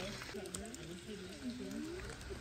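Faint voices talking, over a light crunching of stroller wheels and footsteps on a gravel path.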